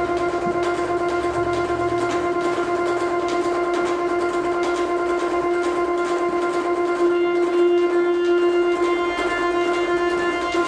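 Jupiter bayan (chromatic button accordion) holding one long, steady note with a low bass note under it for the first two seconds. The note swells about seven seconds in, and higher notes join it near the end.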